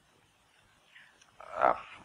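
Quiet room tone, then near the end a man's amplified voice drawing out the word "I".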